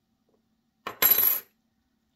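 Small flat steel TWSBI piston wrench dropped onto a wooden table about a second in: a light tap, then a brief bright metallic clatter that rings for about half a second.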